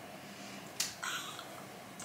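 Quiet room tone with a single sharp click a little under a second in, then a faint soft sound.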